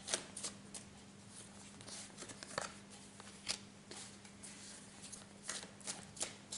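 A tarot deck being shuffled and handled by hand: faint, irregular snaps and slides of cards, a few at a time, with a card drawn and laid on the table.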